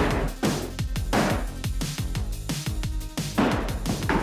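Electronic music with a heavy beat and low bass notes that slide downward after each hit.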